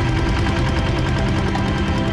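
Small fishing boat's engine running steadily, a rapid, even putter as the boat pushes through shallow water.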